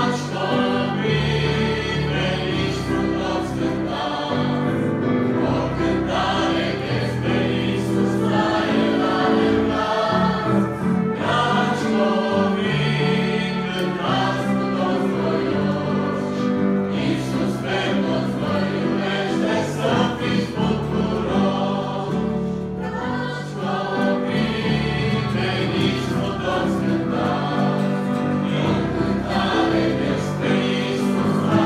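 A mixed church choir of men and women singing a Romanian hymn, backed by instruments holding steady low notes.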